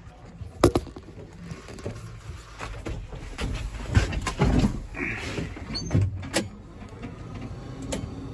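Scattered clunks, knocks and rustling of someone climbing into an old tractor's cab and settling at the controls, with the heaviest thuds about four and six seconds in and a few sharp clicks.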